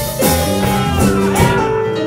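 Live blues band playing: electric guitar bending notes over drums and keyboard.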